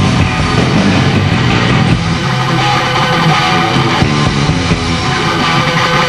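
Heavy metal band playing live, electric guitar to the fore over a dense, steady wall of band sound.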